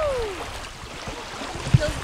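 Small waves lapping on a sandy lakeshore, with a low rumble of wind on the microphone. A distant voice gives a short falling call at the start, and there is a single knock near the end.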